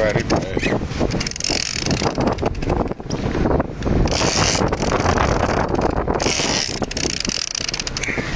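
A small boat's motor running steadily while under way, with water rushing along the hull and wind buffeting the microphone in three hissy gusts.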